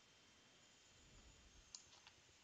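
Near silence, with one faint, sharp click of a computer mouse button near the end.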